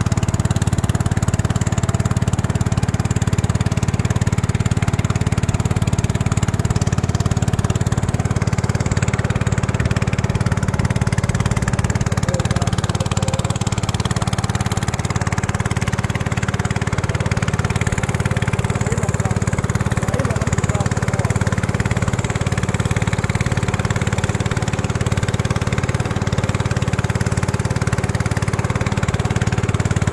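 A small boat's motor running steadily at a constant speed as the long, narrow wooden boat moves along the river.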